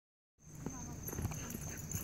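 Two dogs scuffling and digging in loose dirt: paws scraping and light irregular knocks, starting about half a second in, with faint voices behind.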